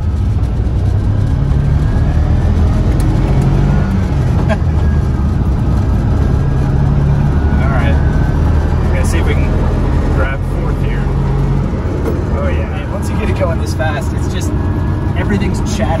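The Snyder ST600-C's rear-mounted 600cc twin-cylinder motorcycle engine drones steadily under load, heard from inside the cabin over road noise. The engine note eases off about twelve seconds in.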